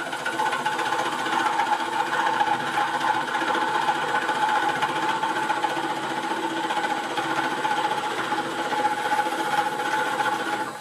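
A drill bit in a tailstock chuck boring into the end grain of a pine blank spinning on a wood lathe: a steady, loud cutting whir with a high whine over it.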